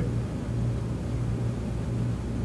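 Steady low hum with background noise, no other events.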